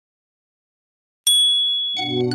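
Silence, then about a second and a quarter in, a single high, bright bell-like ding that rings on and slowly fades.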